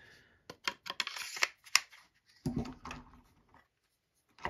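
Handling noise as large fixed-blade daggers are lifted off a plastic cutting mat: a quick run of light clicks and a brief scrape in the first two seconds, then a duller knock about halfway through.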